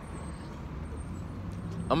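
Steady low rumble of city street traffic.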